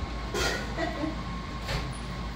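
A steady low rumble of room noise with a faint steady hum, and brief distant voices about half a second and a second in.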